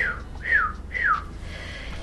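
Three short whistled notes, each falling in pitch, about half a second apart.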